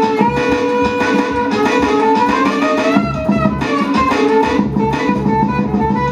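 Live band music with a plucked, guitar-like melodic line and saxophone over a DJ's electronic backing with a steady beat.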